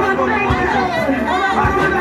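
Several amplified voices led through microphones over a church PA, loud and continuous, with steady sustained musical tones underneath.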